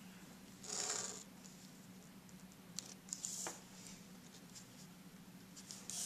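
Faint scratching of a red pencil drawn along a plastic ruler on paper, in two short strokes: one about a second in and another just after three seconds.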